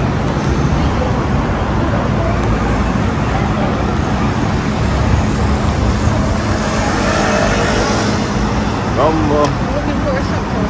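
Steady city street traffic noise, with faint voices of passersby mixed in, a little clearer near the end.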